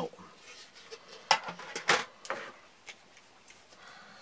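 Handling noise from small hard Kydex and tin items being picked up and set down on a table: a few sharp clicks and knocks, the loudest about a second and a half to two seconds in.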